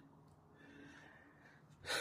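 A quiet pause with faint background noise, ending with a man's audible intake of breath just before he speaks again.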